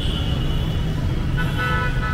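Steady street traffic noise, with a vehicle horn sounding near the end.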